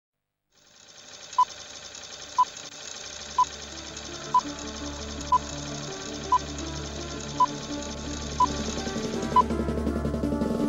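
Opening theme music of a TV programme fading in. A fast, fine rattle sits under nine short identical beeps, about one a second. A bass line joins about three seconds in, and the music grows steadily louder.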